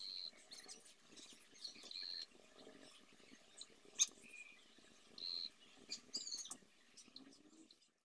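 Faint bird chirps outdoors: short high notes every second or two, one a quick falling call. A single sharp click about four seconds in.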